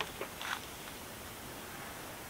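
A light click and a short plastic scrape as a primed and cemented PVC pipe is pushed home into its fitting, all within the first half second, then only a steady faint background hiss.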